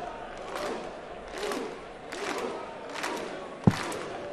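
Darts arena crowd: a steady din of voices, with shouts or chanting swelling roughly every second. A single sharp knock comes near the end.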